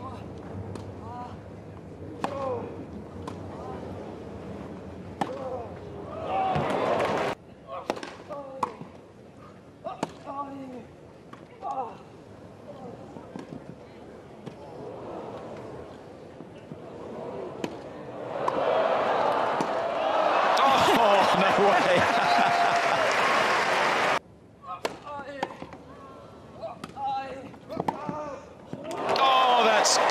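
Tennis rallies on a grass court: rackets striking the ball back and forth in sharp, repeated pops, with crowd murmur between shots. In the middle the crowd cheers and applauds loudly for several seconds, cut off suddenly, and cheering rises again near the end.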